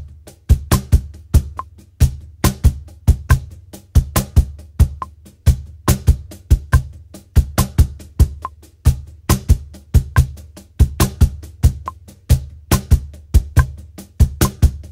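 Meinl Artisan Edition Cantina Line cajón played by hand in a samba rock groove at 70 BPM. It is a steady, repeating pattern of deep bass tones and crisp slaps, with the left hand playing off-beats in the bass tone.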